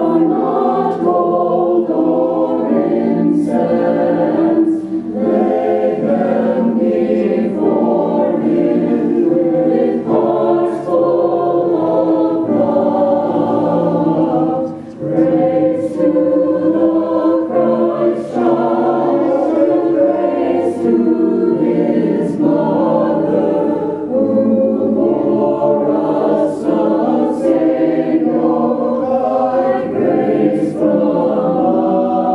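A mixed choir of men's and women's voices singing long, held notes, with a short break between phrases about halfway through.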